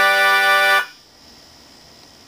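Melodihorn, a mouth-blown free-reed keyboard instrument with an accordion-like tone, holding a steady chord that cuts off sharply a little under a second in, leaving faint room noise.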